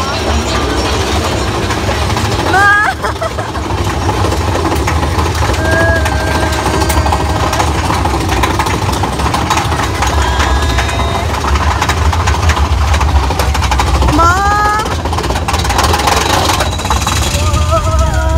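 Big Thunder Mountain Railroad coaster train rumbling steadily along its track at speed. A few short rising shrieks from riders come about three seconds in and again near the end.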